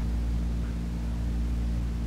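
Steady electrical mains hum with an even layer of hiss: the background noise of a 1950s recording.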